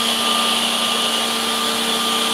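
Industrial edge banding machine running steadily: an even mechanical hiss with a low hum and a faint higher whine, no strokes or knocks.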